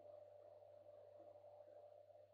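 Near silence: room tone of a faint steady low hum under a thin, steady high whine.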